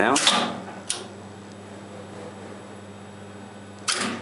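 Express Lift relay-logic lift controller: a relay clicks shut just under a second in over a steady low electrical hum from the cabinet, and another relay snaps in near the end as the logic sets up the lift's trip back down.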